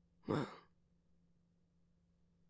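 A man's voice saying a single soft, sighing "well," falling in pitch, then a pause with only a faint steady hum.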